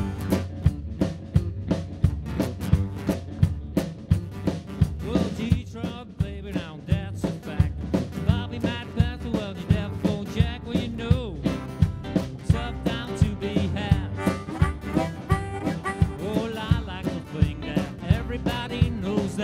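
A live rock and roll band plays an instrumental intro, with drums keeping a steady beat under upright bass and electric and acoustic guitars. From about five seconds in, a harmonica plays a wavering lead over the band.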